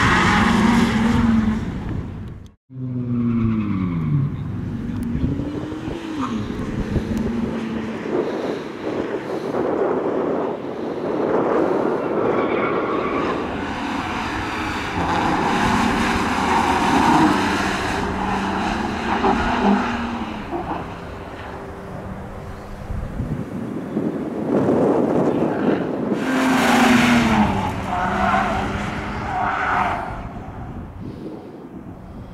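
BMW E46 sedan driven hard through a cone slalom, its engine revving up and falling away again and again between bends, with tyres skidding and squealing on the asphalt. The sound cuts out for an instant about two and a half seconds in.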